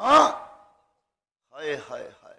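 A man's voice over a microphone: a short drawn-out vocal sound falling in pitch right at the start, about a second of dead silence, then a brief burst of speech near the end.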